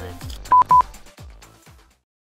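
Two short, loud electronic beeps of the same pitch, about a quarter second apart, over electronic background music with falling bass thumps. The music fades out near the end.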